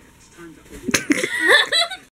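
Quiet room tone, then brief voices with a single sharp smack about a second in.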